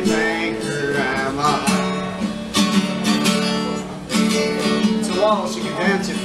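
Acoustic guitar strummed in a steady rhythm, with a man's voice singing over it in places.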